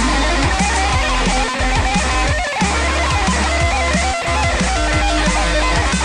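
Jackson V-shaped electric guitar playing a drum and bass melody with bent, gliding notes, over a backing track with a heavy sub-bass.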